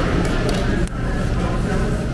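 Restaurant dining-room background: a steady murmur of other diners' voices, with a few light clicks in the first second.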